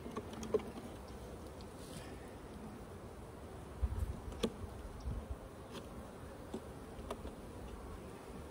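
Honeybees buzzing around an open hive. A few light clicks and a short low rumble about four seconds in.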